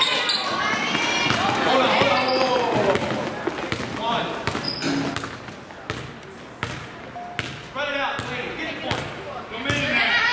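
A basketball bouncing on a hardwood gym floor amid shouts from players and spectators in a large hall. The voices are loudest for the first few seconds and then thin out, leaving scattered ball bounces and a few calls.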